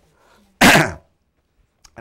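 One loud, short human sneeze close to the microphone, with its pitch falling.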